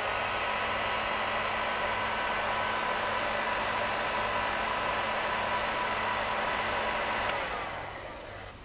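Electric heat gun running steadily, its fan blowing hot air with a faint motor whine as it shrinks heat-shrink tube over a clevis. It is switched off near the end and winds down.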